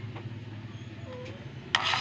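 GOOJPRT portable thermal printer printing a sticker label, its paper-feed mechanism running with a steady low hum; a short sharp rasp comes near the end.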